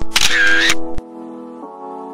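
Camera shutter sound effect at a photo change: a short whirring snap of about half a second, ending in a sharp click about a second in. Soft instrumental music with held chords plays underneath.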